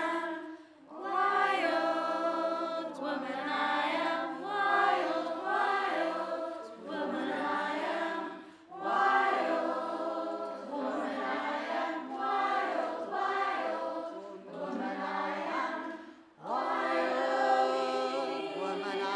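A choir singing unaccompanied, in several voices together. It sings in long phrases with brief pauses about a second in, about halfway through, and near the end.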